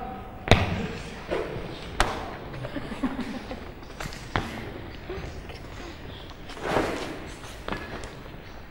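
Feet landing on a sports-hall floor as people step out into lunges: a few sharp, unevenly spaced thuds, the first about half a second in and two close together about four seconds in.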